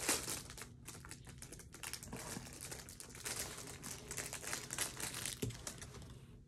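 Packaging crinkling and rustling as hands dig through the contents of a cardboard shipping box, a continuous run of small crackles.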